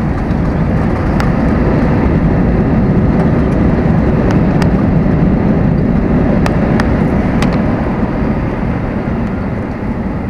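Airbus A320 landing rollout heard inside the cabin: a loud, steady rumble of engines and wheels on the runway with the ground spoilers deployed, swelling over the first few seconds and easing near the end as the jet slows. Faint clicks and rattles from the cabin are heard over it.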